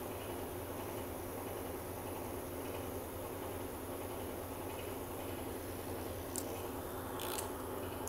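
Steady low hum with two faint clicks near the end as the metal tattoo machines are handled.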